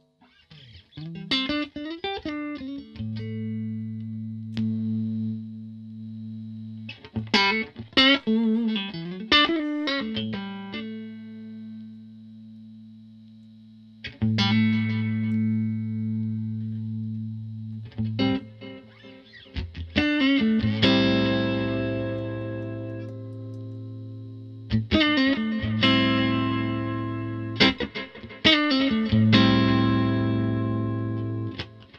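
Fender Stratocaster electric guitar played through a Strymon El Capistan V1 tape-echo pedal: several short, fast picked phrases, each left ringing on long sustained low notes that fade away under the echo repeats.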